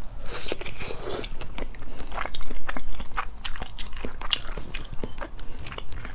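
Close-miked biting and chewing of a boiled, partly developed egg embryo (huozhuzi), with a dense run of sharp, crackly mouth clicks throughout.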